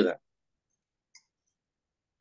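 A voice trailing off, then near silence broken by one faint, very short click about a second in.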